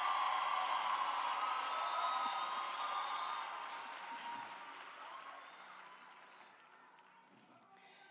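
Congregation applauding, with cheers and calls over the clapping; it is loudest at first and dies away over the second half.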